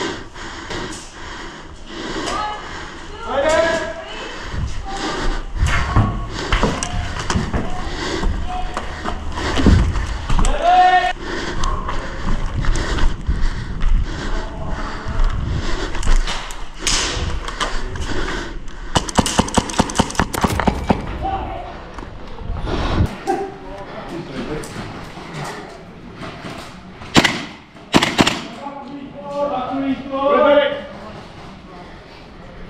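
Airsoft skirmish sounds: thuds and knocks of movement, with brief shouted voices. Just before the two-thirds mark comes a rapid full-auto burst of airsoft gun fire, about ten shots a second for roughly two seconds.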